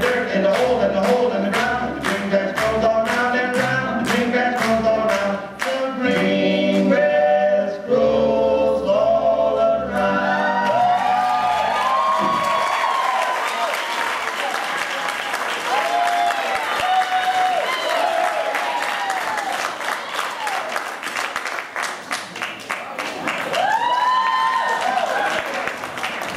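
Recorded swing music with singing over a steady beat, which ends about ten seconds in; audience applause and cheering with whoops follow.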